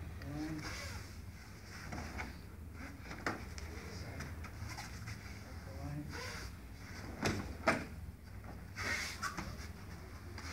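Aikido partners moving barefoot on a foam mat, with cloth rustling and a few sharp knocks or slaps: one about three seconds in and two louder ones close together about seven seconds in, over a steady low room hum.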